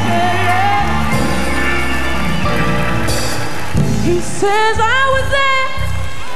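Live gospel music: a band with a steady bass line backs a woman's solo singing voice. She holds a falling note at the start, and from about four seconds in she sings long, melismatic phrases with a wavering pitch.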